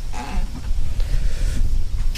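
Wind buffeting the microphone: an uneven low rumble, with a faint short sound about a quarter second in.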